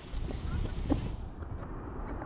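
Shallow surf washing and fizzing around the legs, with a steady low rumble of wind buffeting the microphone.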